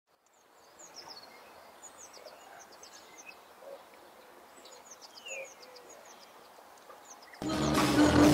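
Faint chirping of birds, many short high chirps. About seven seconds in, live rock band music with guitar and drums suddenly cuts in loudly.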